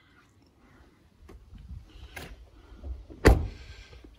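A Land Rover Freelander 2 door being shut: a single heavy thud about three seconds in, after a second or so of low handling rumble and a few light clicks.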